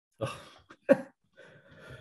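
A man's brief non-speech vocal sounds: after a short spoken 'well', a single sharp cough-like burst of breath about a second in, then faint breathing and the start of a laugh at the end.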